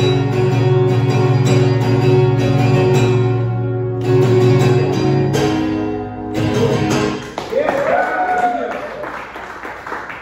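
Acoustic guitar strummed in a steady rhythm, ringing out and stopping about six seconds in as the song ends. Voices follow in the room.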